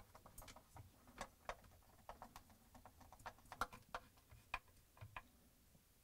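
Faint, irregular clicks and ticks of a Torx screwdriver driving screws into a plastic dishwasher pump filter assembly.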